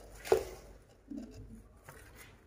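Plastic cling film being laid and smoothed over a plate of cream: quiet rustling, with one short, louder sound about a third of a second in.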